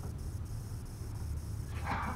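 A short vocal cry from a performer near the end, over a steady low hum in the room.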